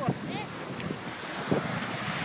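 Small waves washing onto a sandy beach, with wind on the microphone. A couple of faint, short voice calls come in the first half second.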